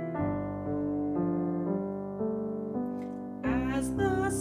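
Solo piano accompaniment playing a smooth, slow passage in 3/4, with held notes changing about twice a second. A singer's voice with vibrato comes in near the end.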